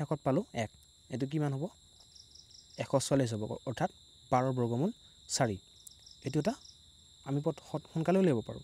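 A voice speaking in short phrases, with steady high-pitched tones running behind it and short pulsed chirps coming and going.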